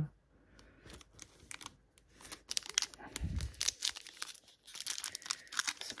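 Foil trading-card pack (Topps Chrome) being crinkled and torn open by hand. The rapid crackling begins about halfway through, with a soft low thump just before it builds.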